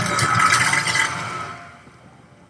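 A fire burning in a TV drama's sound effects: a dense rushing noise that fades away over the second half.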